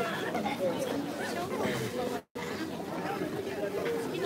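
Chatter of shoppers in a crowded shop: several people talking at once, none of it distinct. The sound cuts out completely for a moment a little over two seconds in.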